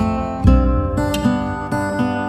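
Music: an instrumental passage of strummed guitar chords over a deep bass note that sets in about half a second in.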